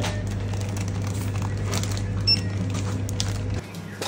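Checkout-counter sounds as a pile of coins is counted out on a glass counter: a few light clicks of the coins over a steady low electrical hum, and a short high beep about two-thirds of the way through. The hum cuts off suddenly near the end.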